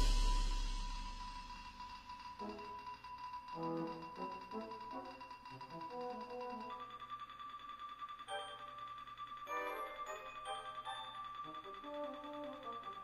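Sibelius notation-software playback of a brass band score in a quiet passage. It opens on the fading ring of a loud hit, then a held high note, which steps up in pitch about halfway through, sounds over sparse short notes.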